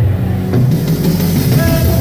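Loud, bass-heavy live band music over a concert PA system, with a steady held note coming in near the end.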